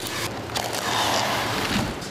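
Plastic cling wrap being handled, a continuous rustling noise.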